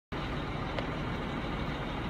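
Steady background hum of road traffic, with one faint click a little under a second in.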